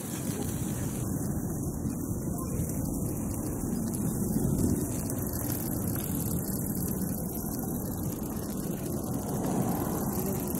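Steady low rumble of wind buffeting the microphone of a handheld camera, with no other distinct sound standing out.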